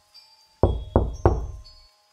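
Three heavy knocks, a fist pounding on the front door, in quick succession about a third of a second apart, each with a short ringing tail.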